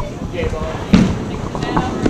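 A candlepin bowling ball thuds onto the wooden lane and rolls down it, over a steady hum of crowd chatter in the bowling hall.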